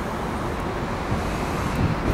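Steady outdoor background rumble, a low, even noise of the kind made by distant road traffic and wind on the microphone.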